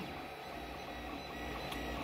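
FDM 3D printer running mid-print, a steady mechanical hum of its motors and fans with faint steady whining tones.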